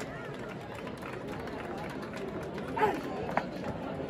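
Large outdoor crowd talking: a steady babble of many overlapping voices, with one voice briefly louder nearly three seconds in and a short click soon after.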